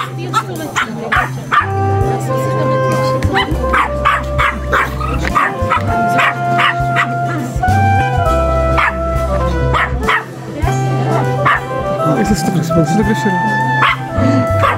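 Background music with a stepping melody over a pulsing bass, and a small dog barking and yipping repeatedly over it.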